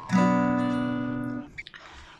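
Steel-string acoustic guitar fitted with new phosphor bronze coated strings: one chord strummed just after the start rings steadily for about a second and a half, then is damped, leaving a faint hiss and a small click.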